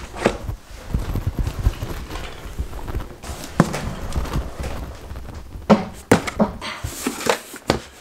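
Wheelchair rolling along a wooden floor, a low rumble with light clicks for the first few seconds. Then a knock as a door is passed, and several sharp knocks and thumps from handling near the end.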